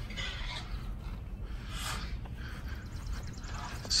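Outdoor ambience: scattered bird chirps and a brief fast trill near the end over a steady low rumble.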